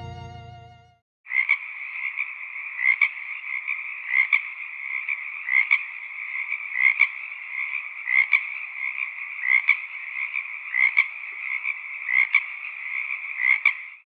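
A sustained musical chord dies away in the first second. A chorus of frogs follows: a steady trilling, with a louder call standing out about every second and a half.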